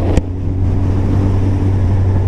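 Suzuki Hayabusa Gen 2's inline-four, fitted with a Yoshimura R-77 dual exhaust, running steadily at road speed as a low hum with wind rush over it. A short sharp click comes a fraction of a second in.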